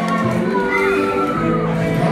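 Live ska-punk band playing loud amplified music in a large hall, with crowd shouts and whoops.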